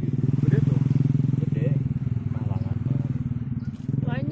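A small engine running steadily close by, a low, even hum with a fast pulse, with faint voices over it.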